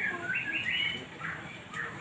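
Small birds chirping: a quick run of short, rising chirps in the first second, then a few scattered single chirps.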